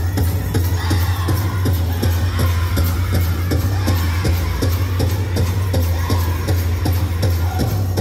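Powwow drum group singing a song, several voices together over a big drum beaten in a steady, even beat.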